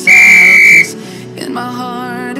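One long electronic beep, a steady high tone lasting just under a second, signalling the start of the next exercise interval, over pop background music with singing.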